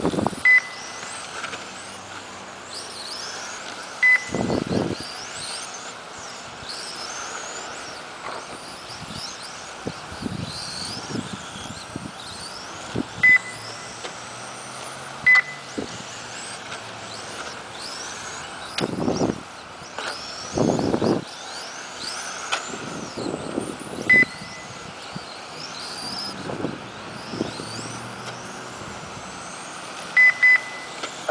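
Radio-controlled touring cars racing, their motors giving short high whines that rise and fall as they pass. Sharp single beeps from the lap-counting system sound now and then, each time a car crosses the timing line.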